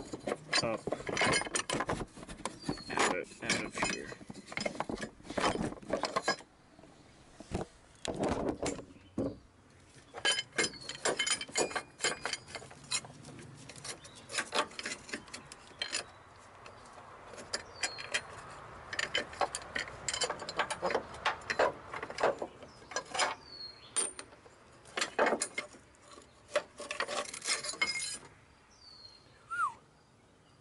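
Irregular metallic clinks and knocks as a bolted-on metal engine mount bracket plate is worked loose and wiggled up out of a crowded engine bay, knocking against the parts around it. The clinking comes in clusters with short quieter pauses.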